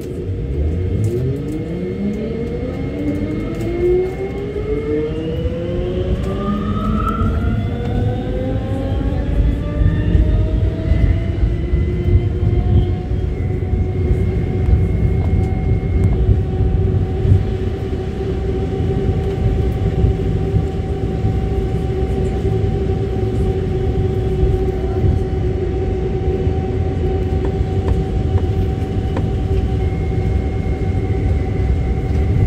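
Lille VAL rubber-tyred automated metro train pulling away from a station: several motor whines climb together in pitch over about the first twelve seconds as it accelerates, then level off into a steady hum over the running rumble as it cruises.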